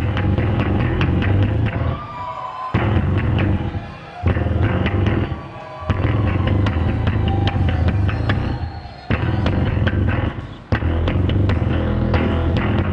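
Amplified electric bass played solo with the fingers: deep low notes in long phrases broken by a few short pauses, with sharp plucked attacks throughout.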